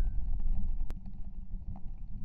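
Low wind rumble on a shotgun-mounted camera's microphone, with one sharp click about a second in.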